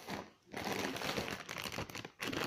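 Plastic popcorn bag crinkling as it is picked up and handled. It is a dense crackle that starts about half a second in and runs on for about a second and a half.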